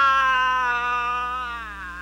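A man's long, wailing yell held on one pitch, then sliding down in pitch and fading away near the end.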